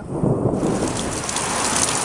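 Heavy rain falling steadily, an even, dense hiss.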